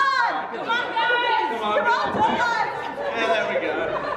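Chatter of several people's voices overlapping, in a large room.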